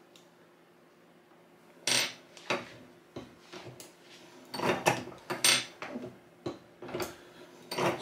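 Metal clicks and clinks from a reloading press being worked and 9mm cartridges handled in it: a sharp clink about two seconds in, a cluster of clicks around five seconds, and a few more near the end.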